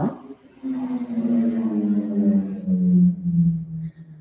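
A woman's long hummed "mmm", starting about half a second in and falling slowly in pitch over about three seconds before trailing off.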